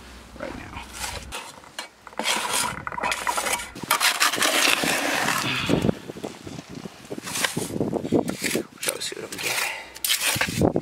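Hand trowel scraping and scooping thick wet cement in a plastic bucket, with irregular scrapes and knocks as the mix is dug out and dumped into the mould.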